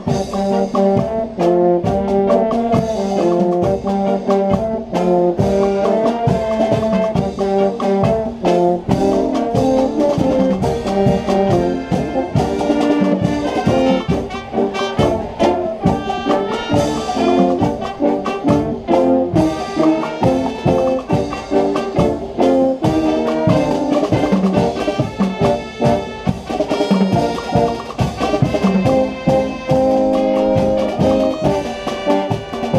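Brass band (fanfarra) playing: trumpets and trombones carry the melody over a steady beat of marching drums.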